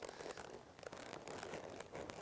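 Faint crunching and rustling as a horse moves over soft arena dirt and its tack shifts, with small irregular clicks.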